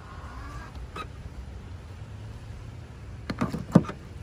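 Tesla Model 3 charge port door opening with a brief motor whirr, then a click. Near the end the charging connector knocks against the port and seats with a sharp clunk, the loudest sound here.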